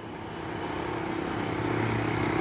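A steady, low engine hum that grows gradually louder, like a motor drawing nearer.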